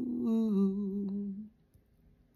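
A woman's unaccompanied voice holding a sung note, stepping down to a lower pitch about half a second in, then stopping about a second and a half in.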